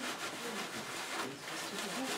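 Repeated scrubbing strokes on a painting surface as paint is worked onto a board, a few strokes a second.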